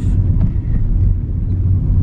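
Steady low rumble of a moving car, heard inside its cabin.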